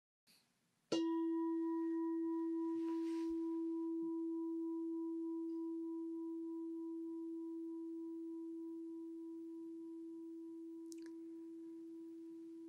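A meditation bell struck once about a second in, its single clear low tone ringing on and slowly fading.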